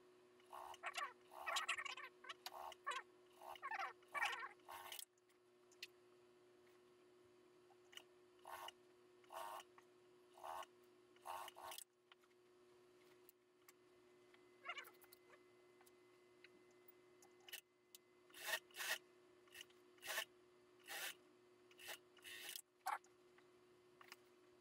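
Suit-jacket fabric rustling and rubbing as it is handled and shifted around on a sewing-machine table, in short scattered bursts that are busiest in the first five seconds, over a faint steady hum.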